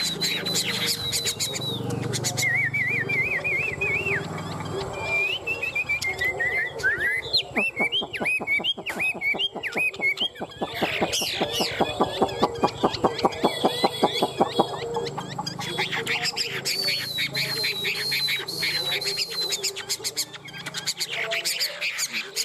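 Chinese hwamei (Garrulax canorus) singing in competition song: loud whistled phrases that glide and warble up and down, with a fast run of repeated notes in the middle.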